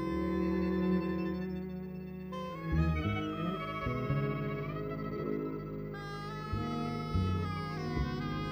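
Acoustic string ensemble of violin, cello and double basses playing together in a free-jazz piece: long held notes over deep bass notes, the chords shifting every second or two.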